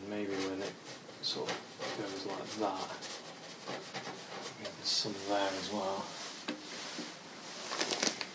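Short dabs and taps of an oil paintbrush against a stretched canvas, with a man's voice in a few brief, indistinct murmurs.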